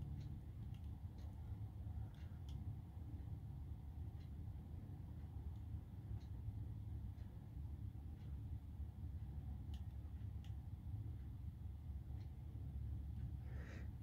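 Quiet room tone: a steady low hum with a few faint, scattered clicks.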